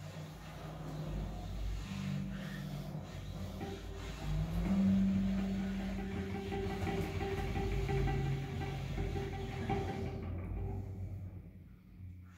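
Free-improvised music for saxophone, violin and percussion: long held low notes that shift in pitch, with higher tones above them, dying away about ten seconds in.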